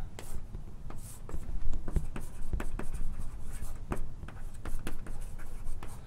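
Writing on a lecture board: a run of irregular short taps and scratchy strokes as an equation is written out.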